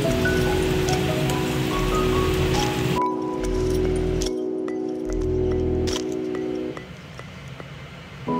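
Background music: a soft chiming melody over held tones. Under it, for about the first three seconds, the hiss of boiling water as rice is poured into the pan; the hiss cuts off suddenly.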